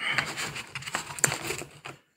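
Handling noise as a newly unboxed Samsung Galaxy S22 Ultra and its packaging are picked over by hand: rustling and crinkling with light taps and clicks, and one sharper click a little past halfway.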